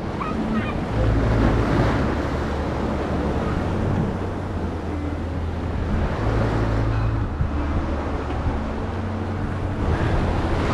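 Wind on the microphone and sea water washing around a small motorboat, over a low steady hum that shifts in level a few times.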